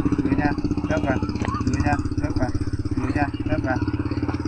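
Small engine running steadily at idle, with a rapid, even pulse, off to the side.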